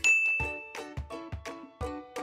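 A single bright ding sound effect at the start, ringing for under a second as the quiz timer runs out. It is followed by background music of short struck notes, a few to the second.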